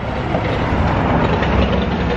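Loud, steady city traffic noise with a deep low rumble.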